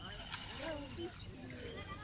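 Indistinct voices talking in the background, with a brief rustling clatter about a third of a second in as the cast net's mesh is handled.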